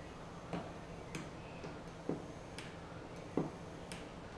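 Small battery-powered bait aerator pump running with a faint, steady low hum, freshly lubricated and working again after being dead. Several light, irregular clicks sound over it.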